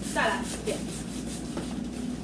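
A woman's brief vocal sound with a falling pitch near the start, then low steady room noise.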